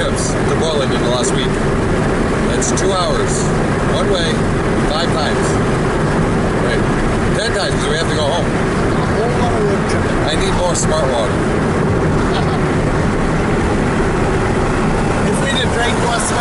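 Steady road and engine noise inside a moving car's cabin, with voices talking over it.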